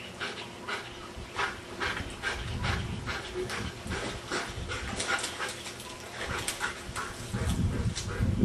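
A dog swimming in a pool, with short breathy sounds repeating about twice a second, and water sloshing louder near the end as it climbs out onto the edge.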